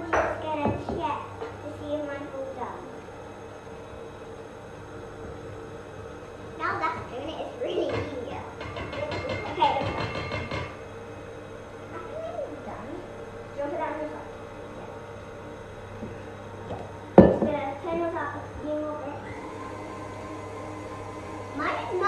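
Stand mixer's motor running steadily as it beats lumpy cake batter in its glass bowl, with children's quiet voices over it and one sharp knock about seventeen seconds in.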